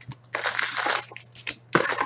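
Wrapped Upper Deck Trilogy hockey card packs crinkling as they are pulled out of an opened cardboard hobby box. There is a long rustle about half a second in and a shorter one near the end.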